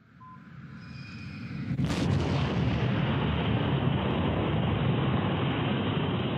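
Soyuz rocket engines igniting at liftoff: a low rumble builds over the first two seconds, a sharp crack about two seconds in, then a loud, steady, rough roar of the engines at full thrust.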